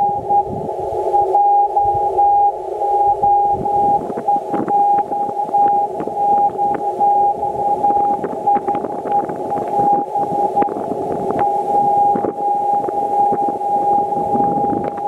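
Morse code from the ON0VHF 2-metre beacon on 144.418 MHz, heard through an Icom IC-9700 transceiver's speaker: a steady high beep keyed on and off in dots and dashes over receiver hiss and crackle.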